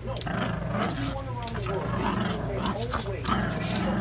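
Small dog play-growling and grunting, with short rises and falls in pitch, as it plays with a toy. Sharp clicks of its claws on the wooden floor come through the growling.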